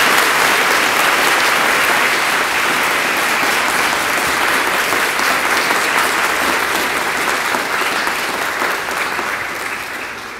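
Large audience applauding, many people clapping steadily, the applause slowly dying down toward the end.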